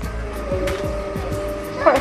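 Steady hum of a safari tour boat's engine running on the lake.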